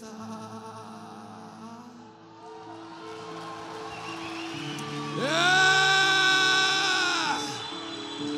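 Soft sustained chords played on a Roland keyboard. About five seconds in, a man's voice slides up into one long held sung note that fades out after about two seconds.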